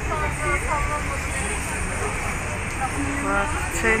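Busy street ambience: a steady low rumble of traffic and urban noise with bits of background chatter from passers-by, and a woman's voice saying a word near the end.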